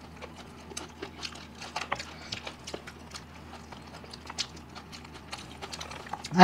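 Close-miked eating sounds: people chewing meat, with scattered soft clicks and smacks of mouths, several a second.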